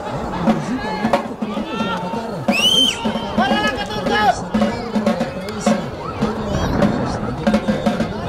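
Voices shouting on and around a soccer pitch, with scattered sharp knocks. A loud, shrill call rises and falls about two and a half seconds in.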